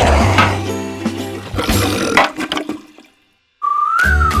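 Cartoon toilet flush sound effect over background music, rushing and then dying away about three seconds in. After a brief silence, cheerful music with a whistled tune starts near the end.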